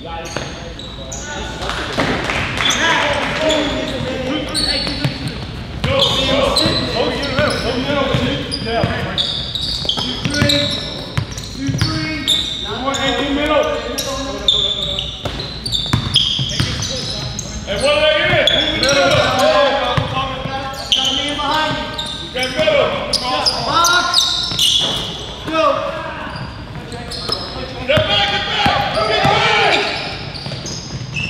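Basketball game on a gym's hardwood court: the ball bouncing as players dribble and move it up the court, under continuous indistinct shouting from players and spectators that echoes in the large hall.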